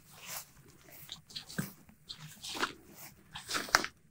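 Faint rustling and brushing of apple-tree leaves and branches and footfalls on grass, with one sharp click near the end.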